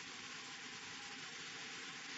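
Faint, steady hiss of room tone and recording noise.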